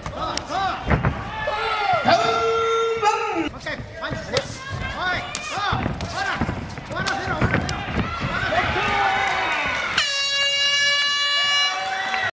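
Excited voices shouting over the fight, with a few sharp smacks, then a steady horn blast on one held pitch about ten seconds in, lasting about two seconds.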